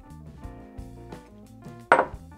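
Background music with held notes, and one short sharp sound near the end.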